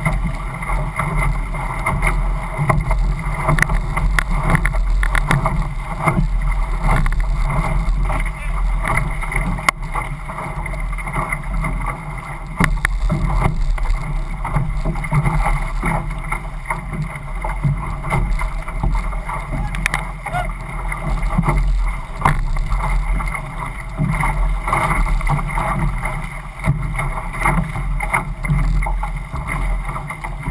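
Water rushing and splashing along a racing outrigger canoe's hull and outrigger float as the crew paddles hard, with irregular splashes and knocks from the paddle strokes and a low rumble of wind on the microphone.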